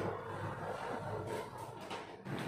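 Quiet room noise with a few faint handling sounds from a steel ruler being shifted against the plastic body of a vacuum sealer.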